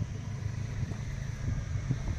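Low, steady background rumble of road traffic, with no distinct passing vehicle.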